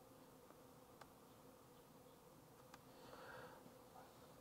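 Near silence: room tone with a steady faint hum, and two faint clicks, one about a second in and one near three seconds, from a laptop being used to step through chess moves.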